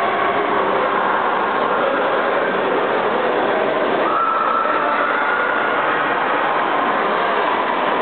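Steady, echoing din of an indoor swimming pool during a race: splashing water and voices blending into one continuous noise in the hall.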